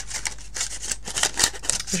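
Cardstock rustling and scraping against a handheld flower-shaped craft punch as the sheet is slid in and lined up, with many light clicks and taps.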